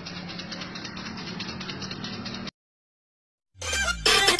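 Steady background noise with a faint low hum, left on an amateur phone recording after the singing stops. It cuts off abruptly to silence about two and a half seconds in, and near the end a sound effect with a falling low tone starts.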